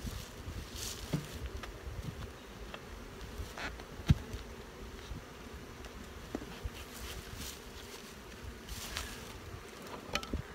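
Honey bees buzzing steadily around an open hive, with the occasional bee passing close by. A sharp knock sounds about four seconds in, along with a few faint clicks.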